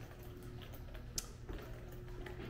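Quiet room tone with a low hum and a few faint light clicks, the sharpest a little past one second in.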